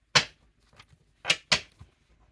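Playing cards being pulled from a deck and snapped down on a wooden table: three short, sharp slaps, one just after the start and two in quick succession about a second and a half in.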